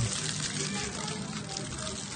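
Aluminium foil crinkling as hands fold and press it around a fish, a steady dry crackle of many small clicks.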